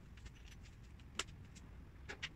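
Faint small clicks and clinks of a hand tool and assembly hardware being handled, with one sharper click a little over a second in.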